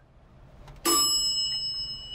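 A single elevator chime ding about a second in, a high ring that hangs on and slowly fades.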